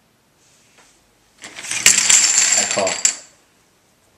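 Poker chips clattering as a stack is pushed over and spills across a tabletop: a burst of dense clicking lasting under two seconds.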